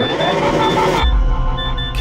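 Trailer sound design: a rising whoosh that breaks into a deep low boom about a second in, with short, high electronic beeps repeating over it.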